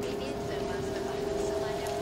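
Dark psytrance breakdown: the kick and bassline are gone, leaving a held synth drone of two steady tones under hissing, sweeping noise textures.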